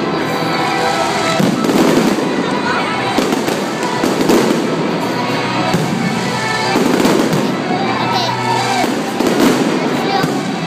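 Aerial fireworks display: shells bursting in repeated booms about every second or so, over a continuous crackle of sparkling stars.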